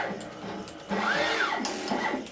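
TM245P pick-and-place machine running at speed: its gantry motors give a whine that rises and falls in pitch as the head moves across and stops, with sharp mechanical clicks in between.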